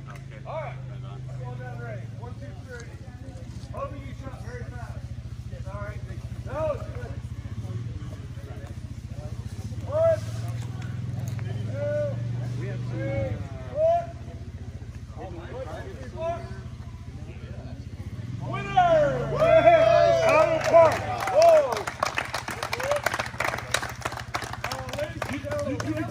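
Indistinct chatter of several men over a steady low hum, growing louder and busier with overlapping voices in the last several seconds.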